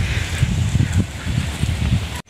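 Uneven low rumble of wind and handling noise on a handheld microphone, with faint rustling.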